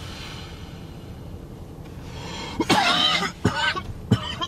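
A man coughing hard in a string of rough coughs, starting about two and a half seconds in, brought on by a hit of marijuana smoke.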